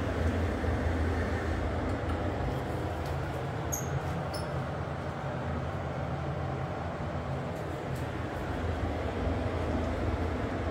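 Steady low rumble of a pot of macaroni at a rolling boil on a lit gas burner. Two brief high chirps come about four seconds in.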